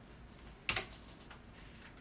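A computer keyboard key pressed: one sharp click a little under a second in, with a fainter tap just before it. It is a keypress closing a BIOS menu selection.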